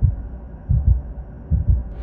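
Heartbeat sound effect: three slow, low double thumps.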